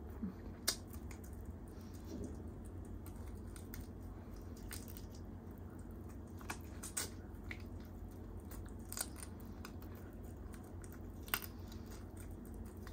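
Close-miked chewing of chicken biryani: wet mouth sounds with sharp lip smacks and clicks every second or two, over a steady low hum.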